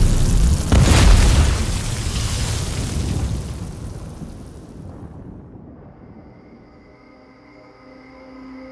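Explosion sound effect: a loud boom about a second in, its rumble fading away over the next few seconds. Soft music tones remain near the end.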